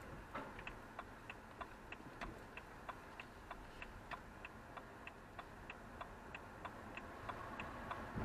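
A car's turn-signal indicator ticking evenly about three times a second in the cabin, over a faint low hum from the car; the ticking stops near the end as the turn is finished.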